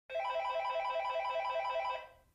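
Short electronic intro jingle: a rapid, ringtone-like trill of a few notes repeating several times a second, which stops abruptly at the end.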